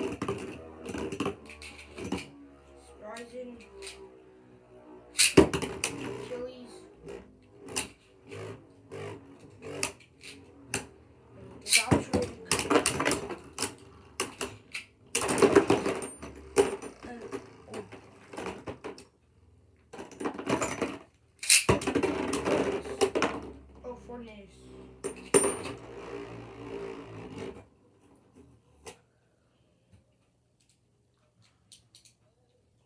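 Beyblade Burst spinning tops whirring in a plastic stadium, with sharp clacks as they collide with each other and the stadium walls, in several busy flurries. The clashing dies away near the end as the tops wind down and stop.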